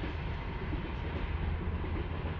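Steady low rumble with an even hiss of outdoor background noise, with no distinct events.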